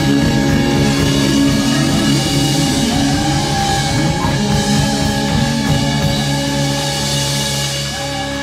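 A live rock band playing at full volume, with a drum kit and electric guitars.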